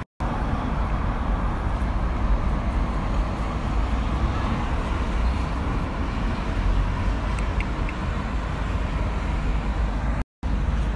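Steady road traffic noise with a heavy low rumble, as vehicles, among them a red double-decker bus, drive past on a busy multi-lane road.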